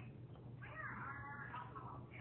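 Newborn baby crying: one wavering cry that starts about half a second in and lasts about a second.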